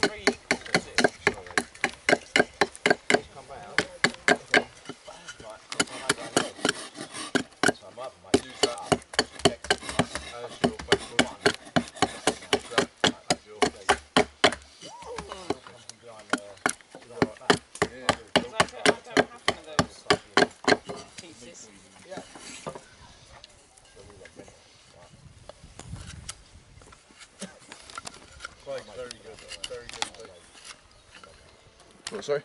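Large knife shaving down a willow bow-drill hearth board in quick, repeated cuts, about two to three strokes a second. The cutting stops about two-thirds of the way through, and after that only a few occasional smaller cuts are heard.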